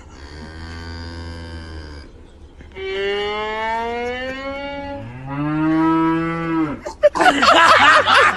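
A cow mooing in long drawn calls, answered between them by a bowed violin note that slides slowly upward. About seven seconds in, loud laughter breaks out.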